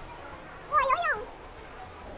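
A short, cat-like meow about a second in, rising and falling in pitch over about half a second.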